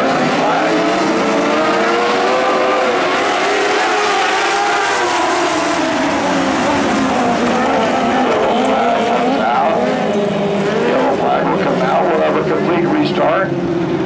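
A pack of dwarf race cars with motorcycle engines running together on a dirt oval, several engines revving up and down in pitch at once as they go through the turns and down the straights.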